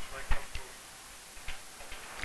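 A few light, irregularly spaced taps and clicks of a pen stylus on an interactive whiteboard as the page is scrolled.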